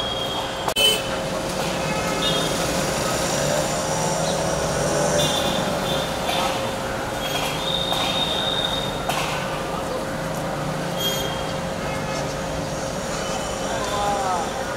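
City street ambience: a wash of traffic noise with a steady mechanical hum underneath and a short sharp knock about a second in.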